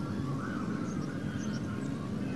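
Steady low outdoor background rumble with a few faint, short high-pitched chirps.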